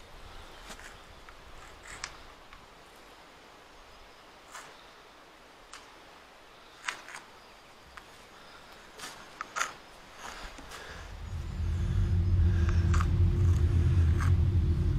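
A few light knocks and clicks over a quiet outdoor background, then about eleven seconds in a loud low rumble with a steady hum sets in and keeps going.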